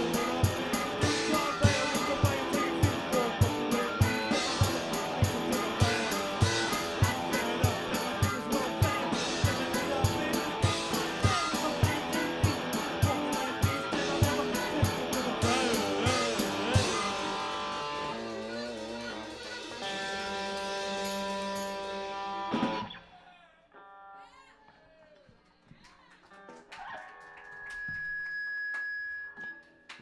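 Live garage-punk band playing: electric guitar and a fast, steady drum beat. The drums drop out about halfway through, held chords ring on, and a final crash ends the song a few seconds later. Quieter, scattered room noise and a single held high tone follow near the end.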